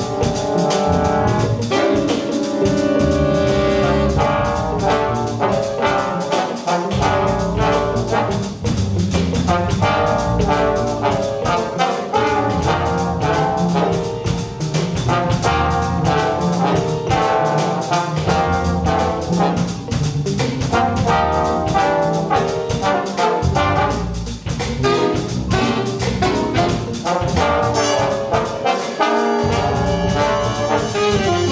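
Jazz big band playing a funk chart: the trumpet and trombone section plays ensemble lines with the saxophones, over a steady drum-kit beat and bass.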